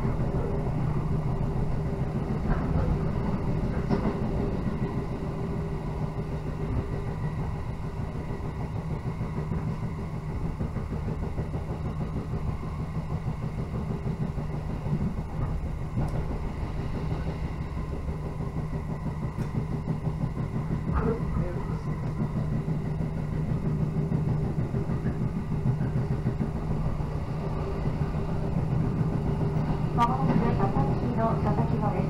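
Electric local train running at speed, heard from inside the passenger car: a steady rumble with a low hum, and a few faint clicks along the way.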